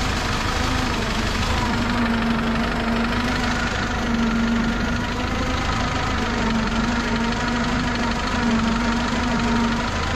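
Tractor engine running steadily while the tractor drives along, a constant hum whose pitch wavers only slightly.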